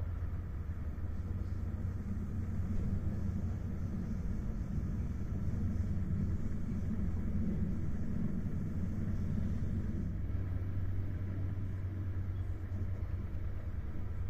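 Steady running rumble of a moving train heard from inside a passenger coach, the wheels rolling on the rails. It is a little louder through the middle and eases about ten seconds in.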